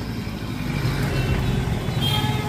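Engines of cars and a van creeping past at close range in jammed traffic, a steady low rumble.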